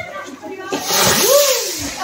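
A lit ground firework catching and hissing steadily, with a red flame, from about three-quarters of a second in. A person's voice rises and falls over the hiss.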